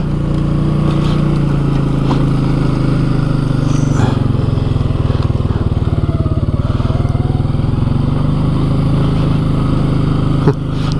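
Can-Am Outlander 700 ATV's single-cylinder engine running steadily at low speed while the quad crawls along a rough, brush-choked trail, with a couple of light knocks about two and four seconds in.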